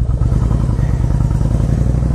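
Yamaha Virago 1100's air-cooled V-twin idling steadily through Vance & Hines exhaust pipes, a fast, even low pulsing. It is running shortly after a completely cold start, fired up without the choke.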